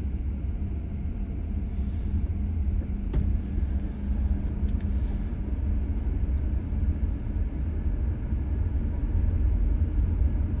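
Steady low rumble of a car's road and engine noise heard from inside the cabin while driving at highway speed, with a faint hum that fades out about four seconds in.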